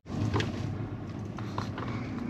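Steady low hum of a parked electric car's cabin, with a couple of faint clicks.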